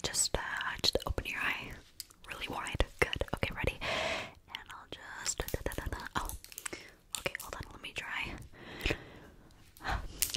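Close-miked whispering into a microphone, broken throughout by many quick clicks and taps.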